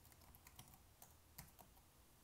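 Faint clicking of a computer keyboard being typed on: a handful of separate keystrokes at an uneven pace.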